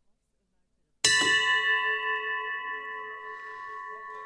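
A single bell or chime struck once about a second in, ringing with a clear metallic tone of several pitches that slowly fades. It sounds just before the sitting is declared open, as the hall's opening signal.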